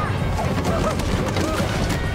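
Film soundtrack: music mixed with short cries from several voices over a dense, steady background noise.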